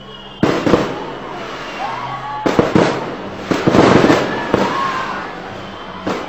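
Fireworks going off in volleys of sharp bangs and crackling. They start suddenly about half a second in, and the densest volley comes around three to four and a half seconds.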